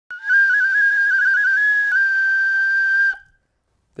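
A single high whistle note, wavering in pitch for its first two seconds, breaking off briefly, then held steady for about another second before cutting off.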